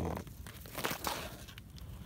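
Dry grass, weeds and stems rustling and crackling, with a few short sharp crackles scattered through it.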